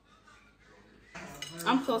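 Near silence, then about a second in a light clink of cutlery against a plate, followed by the start of speech.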